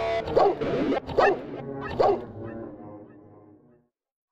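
Three dog barks in a hip-hop track, evenly spaced a little under a second apart, over the tail of the beat. The beat fades out and stops just before the end.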